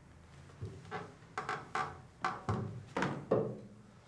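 A string of about eight short knocks and creaks in three seconds, from someone moving about and sitting up on a wooden bed.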